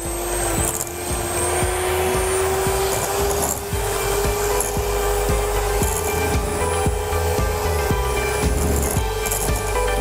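Electric hand mixer running, its beaters churning softened butter into whipped coffee, sugar and cream in a glass bowl. A steady motor whine that creeps slightly higher in pitch.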